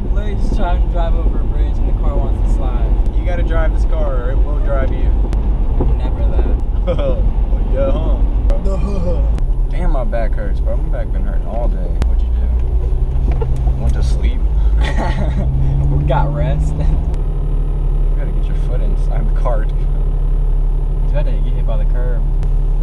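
Cabin noise of a 1994 Jeep Cherokee under way: a steady low road-and-engine rumble, with unclear voices and laughter over it in the first half. About two-thirds of the way through, the engine note rises and then holds steady.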